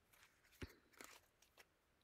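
Near silence with a few faint clicks and a soft tap about half a second in, from tarot cards being handled.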